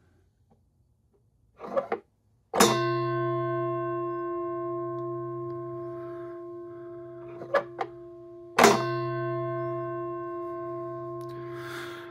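The bell of a hand-operated Masonic low twelve bell box struck twice by its lever-drawn hammer, about six seconds apart. Each stroke is a chime of several tones that rings on and fades slowly, with a faint click just before each strike.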